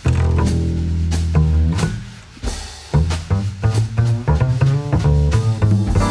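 Amplified upright double bass played pizzicato in a jazz bass solo: a run of plucked low notes that falls away about two seconds in and starts again about a second later.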